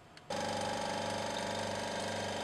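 Vacuum pump switching on about a third of a second in and running with a steady hum, pulling suction through a fritted filter funnel to draw off the alcohol wash.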